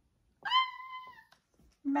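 A woman's high-pitched squeal, one drawn-out "ah!" of about a second that rises at the start and then holds its pitch.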